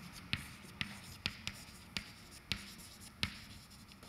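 Chalk writing on a blackboard: about seven sharp chalk taps at irregular intervals, with faint scratching between them.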